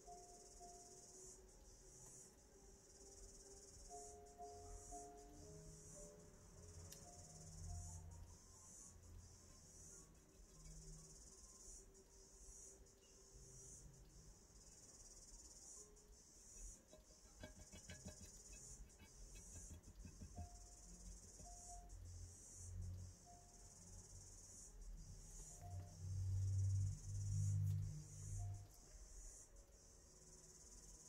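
Faint, steady, high-pitched chorus of insects, with a few faint short tones over it. A low rumble swells twice near the end and is the loudest sound.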